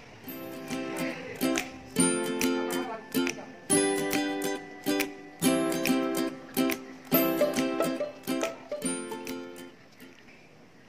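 Background music: a tune of strummed plucked-string chords, struck about twice a second.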